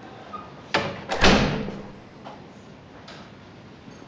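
A room door being shut: a sharp latch click, then about half a second later a louder bang as the door closes, dying away quickly.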